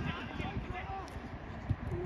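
Faint shouting voices of players on an outdoor pitch over a low wind rumble on the microphone, with a short knock near the end.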